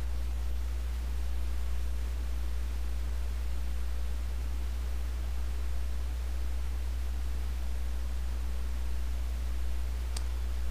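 Steady low hum under an even hiss, unchanging throughout, with no distinct events.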